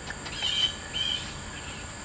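A bird calling loudly, two short high notes about half a second apart.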